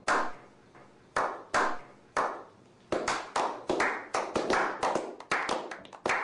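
A small group clapping hands in a slow clap: single claps spaced about half a second to a second apart, then from about three seconds in quickening into faster, overlapping applause.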